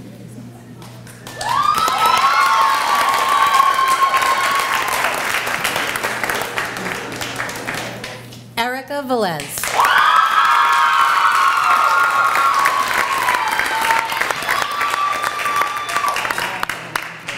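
Audience applauding, with long, high-pitched held cheers over the clapping. About halfway through it is broken by a brief falling warble and dropout, then the applause and a second long cheer resume.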